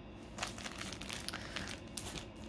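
Foil booster-pack wrappers crinkling as a handful of Pokémon packs is handled. The irregular rustling starts about half a second in.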